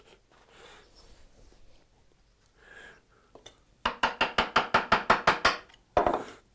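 Chisel being driven into hardwood with a turned wooden mallet to chop dovetail waste: a quick run of a dozen or so light taps, about six a second, starting nearly four seconds in.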